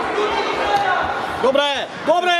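A voice shouting twice in quick succession near the end, each call rising and falling in pitch, over the steady chatter of spectators in an echoing sports hall.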